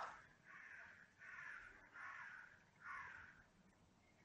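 Near silence, with four faint, short, harsh bird calls about half a second each, spaced under a second apart.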